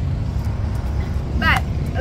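A loud, uneven low rumble of outdoor background noise, with a short voice sound about one and a half seconds in.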